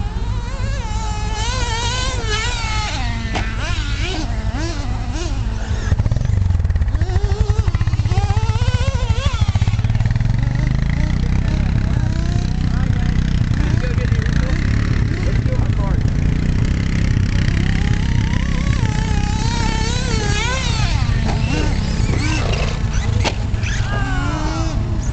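Electric motors of radio-controlled trucks whining, the pitch swooping up and down over and over as the throttle is worked. A steady low rumble runs underneath.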